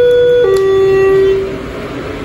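Elevator's electronic two-tone chime: a higher tone steps down to a lower one about half a second in, which rings for about a second. A falling two-stroke chime is the usual signal that the car will travel down.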